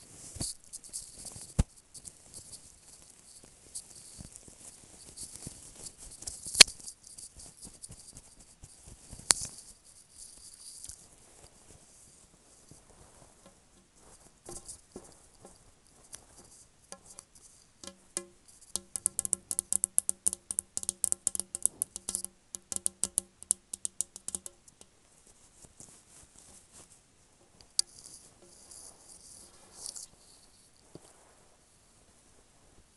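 Fabric scrunchies rubbed and squeezed close to an earphone microphone, a crackly rustle with a few sharp clicks. Later, fingernails tap rapidly on the base of a large plastic bowl: a run of quick, hollow, ringing taps lasting about six seconds.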